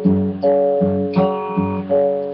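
Steel-string acoustic guitar fingerpicked slowly. A thumbed low G bass on the low E string alternates with notes plucked on the D and G strings, about six notes a little under half a second apart, each ringing into the next.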